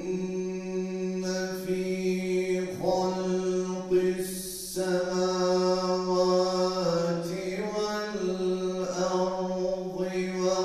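A man's solo voice chanting an Islamic religious recitation into a handheld microphone, holding long, ornamented notes at a steady pitch, with a short break for breath about four seconds in.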